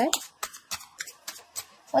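Tarot cards being handled and shuffled: a string of light, crisp clicks and snaps at irregular intervals.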